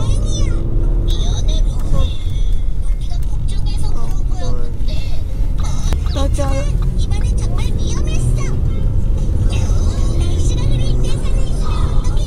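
Steady low rumble of a moving car's engine and tyres heard from inside the cabin, with music and a voice over it.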